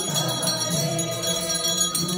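Many voices singing a Hindu devotional hymn together in long held notes, with small bells ringing.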